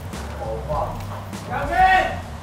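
Short wordless voice sounds, twice, the second louder, like a hum or exclamation while chewing, over background music.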